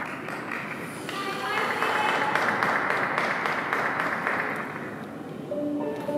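Audience clapping and cheering in an ice rink for about three seconds, then fading out. Held notes of the skating program's music start near the end.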